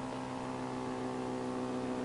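Home-built pulse motor running with a steady electrical hum, its rotor turning under the pulsed drive coil after the output load has been disconnected.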